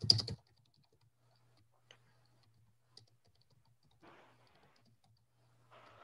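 Faint, scattered keystrokes on a computer keyboard: a few light clicks spread over several seconds, over a low steady hum.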